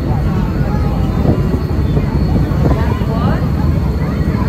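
A steady low rumble with indistinct voices talking faintly over it.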